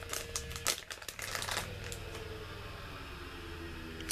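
Clear plastic bag of wax melts crinkling and clicking in the hands for about the first second and a half, then quieter.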